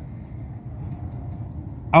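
Steady low background noise with no distinct events, heard in a pause between speech.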